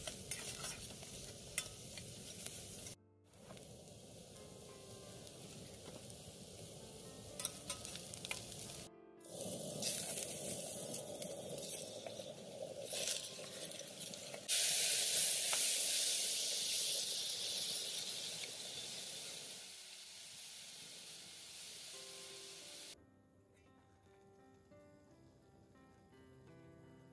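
Chopped onions frying in oil in a stainless-steel saucepan, sizzling steadily, with a metal spoon stirring and clinking against the pot. About halfway through the sizzle jumps much louder as chopped tomatoes go into the hot pan, then dies down over several seconds. Near the end it gives way to quiet music.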